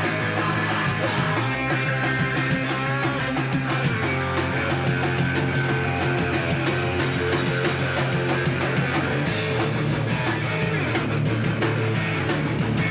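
Live rock band playing a loud song: distorted electric guitar and bass guitar over a steady drum beat.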